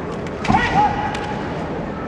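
A sharp crack of bamboo shinai striking about half a second in, followed at once by a short kiai shout, as a kendo fencer strikes while breaking away from close grappling.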